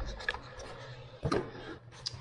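Handling noise as a camera is moved about and set down on a desk: a few knocks and rustles over a low rumble, the loudest knock about a second and a third in.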